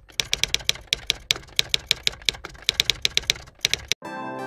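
Typewriter typing sound effect: quick, uneven key clicks, about six a second, stopping just before the end.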